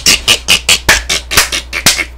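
A man laughing hard close to the microphone in rapid, breathy bursts, about five a second.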